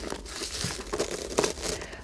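Wrapping paper and ribbon rustling and crinkling under the hands as a ribbon is tied around a decoration on a wrapped gift, with a few small sharp clicks.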